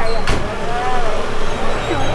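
Motorcade arriving at low speed: a car and escorting police motorcycles running with a steady low engine rumble. Voices are heard in the background, and there is a sharp click about a third of a second in.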